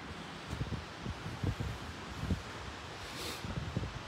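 A light breeze buffeting the phone's microphone in uneven low gusts over a steady outdoor hiss, with a brief brighter rustle about three seconds in.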